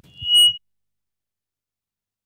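A brief, high-pitched squeal of public-address microphone feedback, swelling quickly over about half a second over a few low handling knocks, then cut off abruptly to silence, as if the microphone was switched off.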